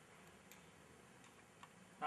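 Near silence: faint room tone with two faint, short ticks, one about half a second in and one near the end.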